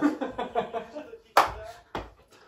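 Several men laughing, then a single sharp smack of a hand about a second and a half in, followed by a smaller one near the end.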